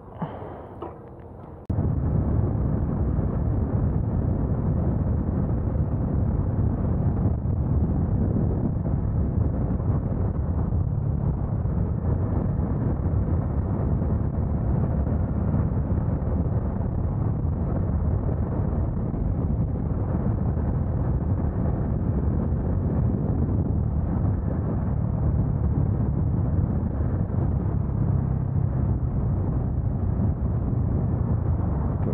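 Motorcycle riding at highway speed: a steady rush of wind on the microphone with the engine under it. It cuts in suddenly about two seconds in, after a quieter moment, and then holds evenly throughout.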